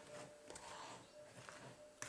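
Near silence, with a couple of faint soft ticks from a fork stirring banana fritter batter in a plastic bowl.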